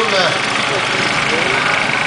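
Trials motorcycle engine running as the bike is ridden over an obstacle, with a man's voice over it.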